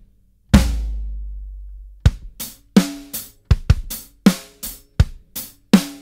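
Playback of a close-miked acoustic drum kit, tight and controlled: one big hit about half a second in with a long low boom, then from about two seconds in a steady beat of kick, snare and hi-hat at about three hits a second.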